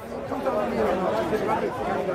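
Several people talking over one another in a crowd, a steady jumble of overlapping voices with no one voice standing out.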